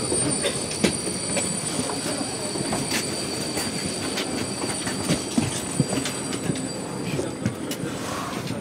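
Inside a passenger coach on the move: its wheels squeal steadily and high on the rails, with frequent clicks and knocks from the running gear and track.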